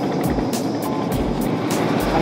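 Background music with a regular beat over the steady running noise of a wooden tour boat under way.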